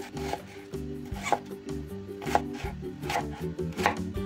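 Chef's knife cutting through a raw onion and knocking on a wooden cutting board in about six irregular strokes, over steady background music.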